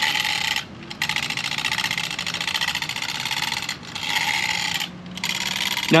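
An RC car rolled by hand over brick pavers, its tyres and drivetrain gears spinning the unpowered Castle V2 2200kv brushless motor with a fine rapid rattle. It comes in three pushes with short breaks between them. The redesigned motor lets the car roll freely, with low cogging torque.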